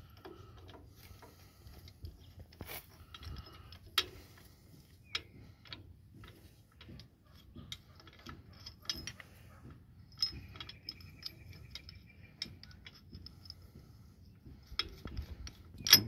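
A hand wrench working a bolt on the steel cultivator mounting bracket of a Farmall Super A tractor: scattered light metallic clicks and clinks, with a few sharper knocks about two and a half, four and ten seconds in.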